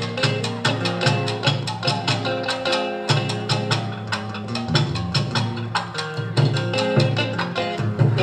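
Kawachi ondo band accompaniment playing: a drum kit and drums keep a brisk, steady beat under held pitched instrument notes.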